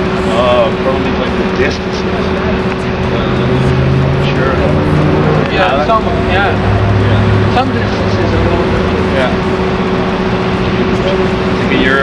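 A steady mechanical hum with a constant low droning tone. A deeper rumble swells twice in the middle, and short snatches of murmured speech come over it.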